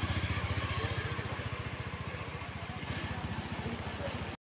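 A small engine running with a fast, even low pulsing that slowly fades over the few seconds.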